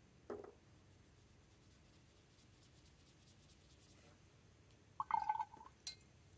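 Paintbrush laying wet ink onto a paper card: faint soft strokes. Near the end comes a short ringing clink.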